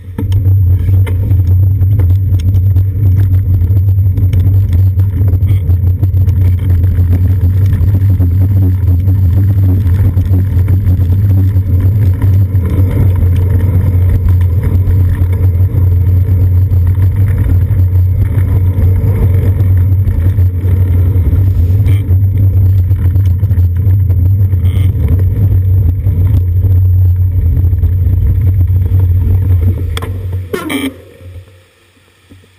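Loud, steady low rumble of wind buffeting and riding vibration on a bicycle's seat-post-mounted GoPro while the bike is moving. It comes on abruptly as the bike pulls away.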